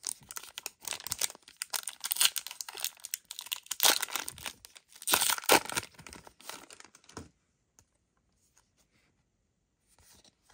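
A Disney Lorcana booster pack's foil wrapper crinkling as it is handled and torn open, with the loudest rips about four and five and a half seconds in.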